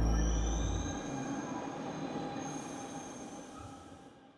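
Metro train sound effect: a high wheel squeal, rising slightly in pitch, over a rushing noise that fades steadily away.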